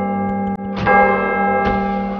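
A large clock-tower bell ringing, a steady chord of many tones, struck afresh a little under a second in and again near the end.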